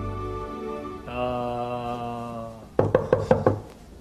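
A quick run of about six knocks, as of knuckles rapping on something hard, after a drawn-out 'uh' from a man's voice; a music chord fades out at the start.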